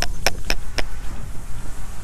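Hands flapping against clothing near a clip-on microphone: four quick rustling knocks about a quarter second apart, then a steady rustle.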